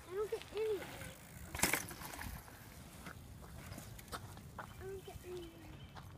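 A few short voice calls that rise and fall in pitch, likely a child's, near the start and again near the end, with one brief loud noisy rush about a second and a half in and a few faint clicks in between.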